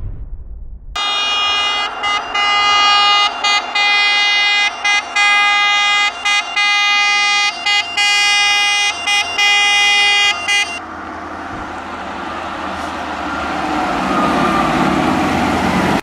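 Fire engine's siren horn sounding in long steady blasts with short breaks, stopping about eleven seconds in. Its engine and road noise then grow louder as it draws near.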